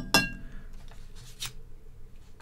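A sharp clink with a brief ringing tail, then a fainter click about a second and a half in: small hard parts being handled, in step with a tank sensor being disconnected.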